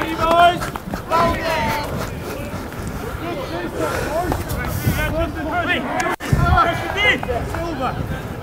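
Rugby players shouting to each other across the pitch, several overlapping calls over outdoor background noise. The sound drops out briefly a little after six seconds.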